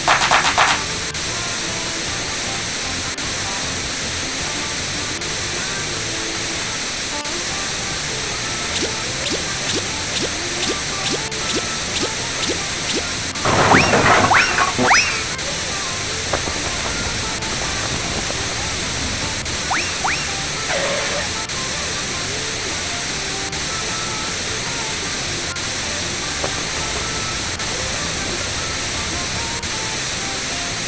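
Animation soundtrack: a steady hiss-like noise bed with soft background music, broken by a cluster of short sweeping sound effects about 14 seconds in and a fainter pair around 20 seconds.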